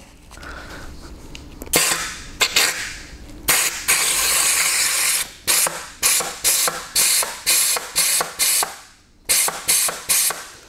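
Compressed air from a blow gun hissing into the K2 clutch-pack oil passage of a 09G automatic transmission case. First a blast, then a long one of about two seconds, then a run of short blasts about two a second. The pack does not hold the air and leaks it out as oil mist, a sign of a partly torn K2 pack.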